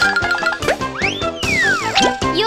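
Upbeat children's background music with cartoon sliding-pitch sound effects: a short rising glide about half a second in, then a longer tone that rises and falls away over the second second.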